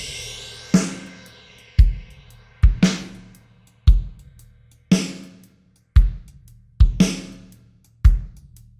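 Recorded drum kit played through a tape-saturation plugin on a hot preset. Kick and snare hits alternate about once a second, each ringing out, with some tape-style flanging.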